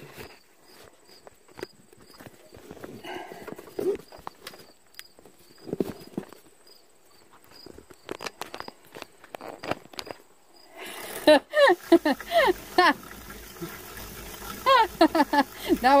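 A quiet stretch of faint scattered knocks and handling sounds over a light, evenly spaced high ticking, then a person laughing loudly near the end, with more laughing and talk at the close.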